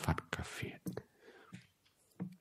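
Quiet speech: a man speaking Thai softly in short, broken phrases.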